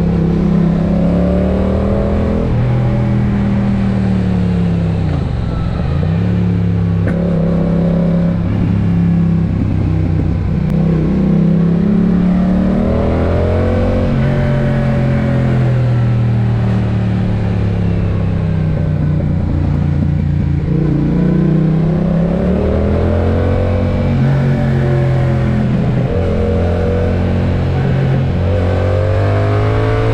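Yamaha MT naked motorcycle engine on the road, its revs rising and falling again and again through the bends, with two deep drops in revs around six and twenty seconds in. Wind noise on the helmet-mounted microphone lies under the engine.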